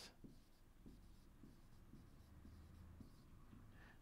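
Faint strokes of a marker writing on a whiteboard, a series of short quiet scratches.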